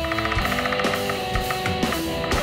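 Rock band music: electric guitar and drum kit playing an instrumental with a steady rhythm.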